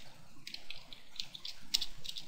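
Computer keyboard typing: an uneven run of about ten light keystrokes.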